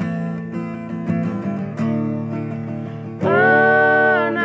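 Acoustic guitar strummed in a steady rhythm. A little over three seconds in, singing voices enter on a loud, held note that glides in pitch.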